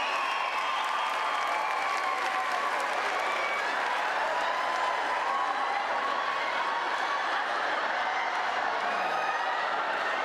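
Audience applauding and laughing at a stand-up comedy act, a steady wash of clapping with voices mixed in.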